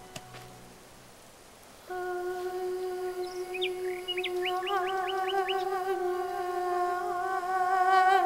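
Background score: a single held note on a wind-like instrument enters about two seconds in and sustains, wavering slightly. A bird chirps a quick run of short rising notes over it in the middle.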